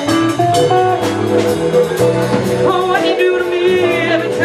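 Live blues band playing: a woman singing over electric guitar, bass guitar, drum kit and keyboard, with the voice's melodic line coming forward near the end.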